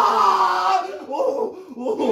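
A man's voice: a drawn-out cry, then shorter broken vocal sounds. He is reacting to the pulses of an electrical labour-pain simulator on his abdomen.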